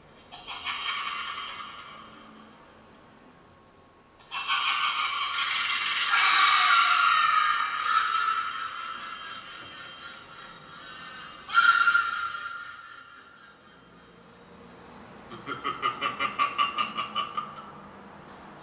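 A scream sound effect played by the pumpkin's MP3 module through its speaker. There is a short shriek at the start, then a long, loud scream starting about four seconds in and lasting some seven seconds, a brief sharp cry after that, and near the end a rapid pulsing run of about four beats a second.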